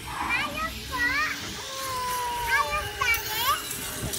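Excited, high-pitched voices calling out: several short cries that rise and fall, and one longer held call in the middle.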